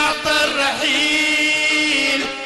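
Two men singing a Sudanese song together with live band accompaniment, settling into one long held note about halfway through.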